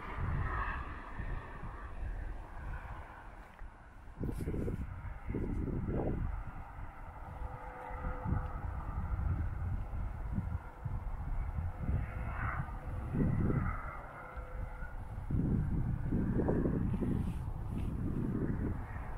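Wind buffeting the microphone in uneven gusts, with a faint steady engine drone in the distance.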